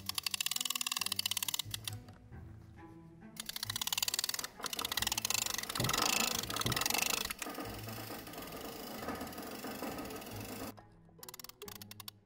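Background music of low sustained notes, overlaid by a fast, even mechanical clicking that comes and goes and a denser rattle that cuts off abruptly near the end.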